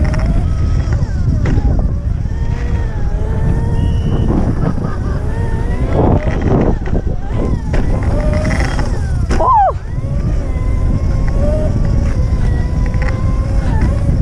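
Electric dirt bike's motor whining, its pitch rising and falling with speed, with a sharp rise and drop about nine and a half seconds in. A loud low rumble of wind and tyres on concrete runs under it.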